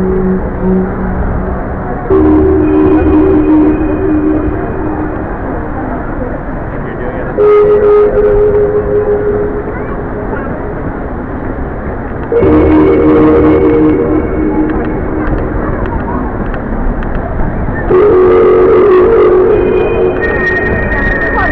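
Sound installation playing electronic chords: four held chords of steady tones, each starting suddenly about five seconds apart and lasting a couple of seconds, over a steady crowd hubbub.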